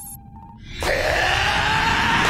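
Anime sword-skill charging sound effect: after a brief hush, a sustained shimmering hum swells in suddenly a little under a second in, with dramatic music.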